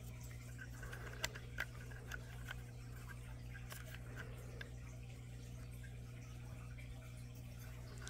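A few faint clicks of light hand handling over a steady low hum.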